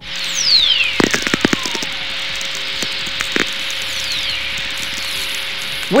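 Radio recording of ionospheric whistlers played as audio: a whistle gliding down from very high to low pitch over about two seconds, then a fainter second falling whistle, over a steady hiss. Sharp crackling clicks from lightning sferics come around a second in and again just past three seconds.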